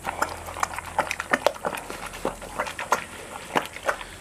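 A bear eating grain-and-corn porridge from a metal trough: a run of irregular wet smacking and chewing clicks as it works its mouth through the food.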